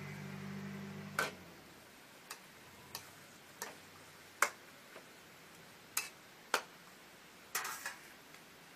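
Metal spatula clacking against a steel wok as water spinach is stir-fried, about ten sharp, irregular knocks. A low steady hum cuts off about a second in.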